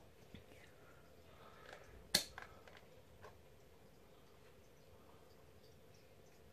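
Small plastic deli cup being handled in the hands: one sharp plastic click about two seconds in, with a few faint ticks around it, over quiet room tone.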